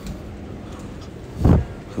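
Steady low background hum, with one brief low thump about one and a half seconds in.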